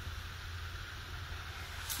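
Quiet room tone: a steady low hum with faint hiss and no distinct event.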